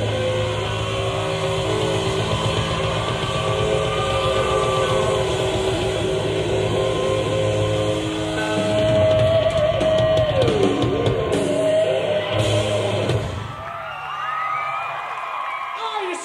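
Live hard rock band playing sustained chords on electric guitars, bass and drums, recorded raw from the audience on tape. About thirteen seconds in the band drops back, and voices whoop and shout over what is left.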